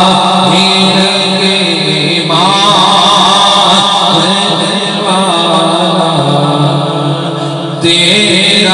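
A man singing a naat, an Urdu devotional poem, into a microphone in long, ornamented held lines that waver in pitch. A new phrase starts about two seconds in, and another just before the end.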